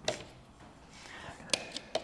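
Chilled, stiffened low-smoke twin and earth cable being handled and stripped with a flat-cable stripper. There is a sharp click at the start, then two more close together about one and a half seconds in, with faint handling noise between.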